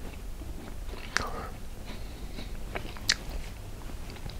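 Close-miked chewing and mouth sounds of a man eating cabbage roll casserole, with two sharp clicks, about a second in and about three seconds in.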